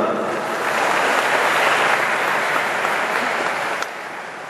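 A congregation clapping: a steady round of applause that starts suddenly and dies away just before the end.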